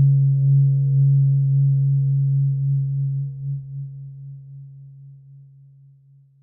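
Low sustained drone from guitar-based ambient music, wavering in a slow pulse, its higher tones dying away first as the whole sound fades steadily toward silence at the close of a track.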